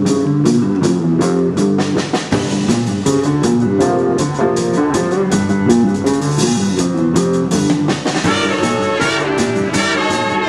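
Jazz big band playing an up-tempo tune, guitar and drum kit keeping a steady beat, with the horns coming in near the end.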